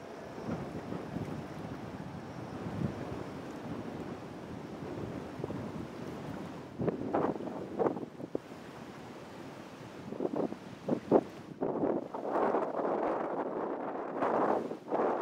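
Wind blowing on the camera microphone: a steady rushing, with several stronger gusts buffeting it in the second half.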